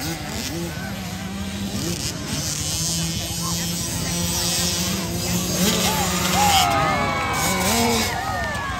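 Mini motocross bikes of the 50/65cc class running at high revs, a steady high engine buzz, with pitch swinging up and down near the end.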